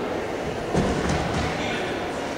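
Low rumbling thuds about three-quarters of a second in, lasting about half a second, over the steady background noise of a large indoor hall.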